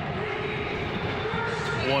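Steady stadium crowd noise with indistinct voices, heard through a broadcast during a stoppage in play.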